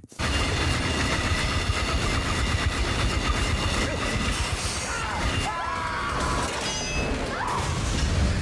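Film soundtrack of a horror trap scene: a loud, dense mechanical din from a motorcycle engine driving the trap, mixed with tense music, starting abruptly and running on without a break.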